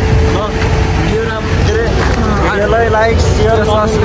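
A large bus engine running close by, a steady low rumble, with people's voices calling over it.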